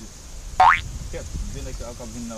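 A short cartoon-style 'boing' sound effect, a quick sweep in pitch, about half a second in and louder than the talk around it.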